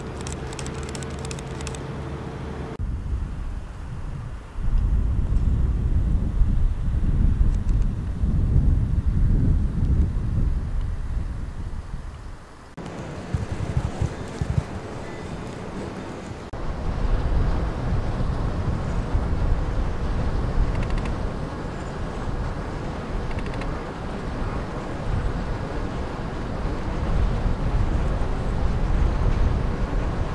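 Wind buffeting the microphone in uneven low rumbles. It changes abruptly about three seconds in and again near the middle. The first three seconds hold a steady low hum instead.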